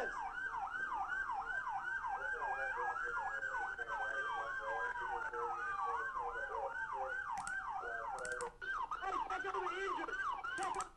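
Police car sirens on the yelp setting, sweeping up and down about three times a second, with a second siren on a slower wail that rises and then falls in the middle.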